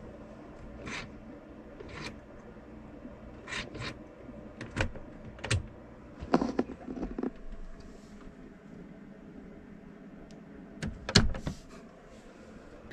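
Scattered clicks and light knocks of hands handling parts and fittings around the dashboard, with a cluster of sharper knocks near the end, over a steady low hum.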